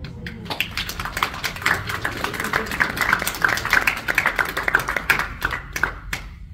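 Audience applauding after a poem reading: a dense patter of hand claps that thins out to a few stray claps near the end.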